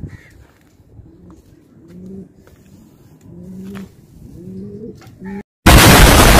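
Domestic pigeons cooing softly several times, with low rising and falling coos. Near the end a sudden, very loud explosion sound effect cuts in after a brief dropout.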